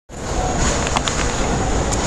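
Steady ambient rumble and hiss, like traffic, with a faint steady high-pitched whine and a couple of light clicks.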